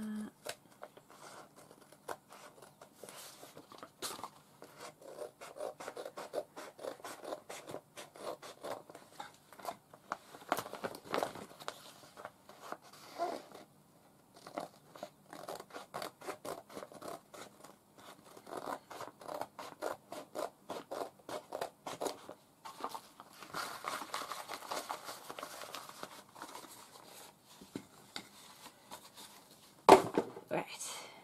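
Paper and card being worked by hand: a long run of quick, scratchy snips and scrapes in irregular spells, with a brief lull about halfway through.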